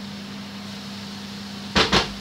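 A spoon knocked twice in quick succession near the end, shaking dollops of quark off it into a frying pan of spinach, over a steady low hum.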